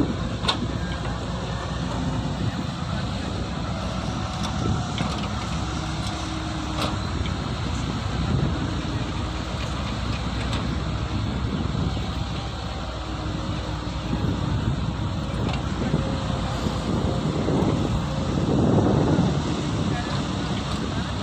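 Wheeled excavator's diesel engine running under digging load, with hydraulics working the boom and bucket; the sound swells louder a couple of times, most near the end.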